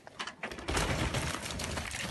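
Mountain bike rolling down a granite boulder face and onto the dirt trail below: a few light clicks, then a loud crunching rush of tyres on grit and rock about three-quarters of a second in, tailing off.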